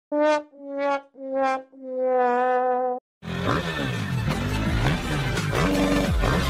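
Sad trombone sound effect: four brass notes, each a little lower, the last held long and wavering. About three seconds in it stops and loud intro music begins.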